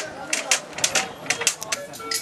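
A quick, irregular run of sharp clacks, about five a second, from hand work at a wooden rack.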